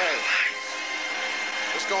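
A man's voice calls out briefly at the start, over a steady buzzing hum with several high whining tones that runs under the whole live recording. Speech resumes near the end.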